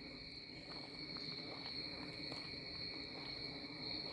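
Quiet pause filled by a faint, steady high-pitched whine of two tones over low background hiss.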